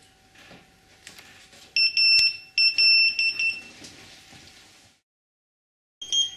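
AntiLaser AL Priority laser jammer beeping as it is switched on by a long press of its power button: a high, steady electronic tone in two beeps, starting about two seconds in, the second beep longer than the first.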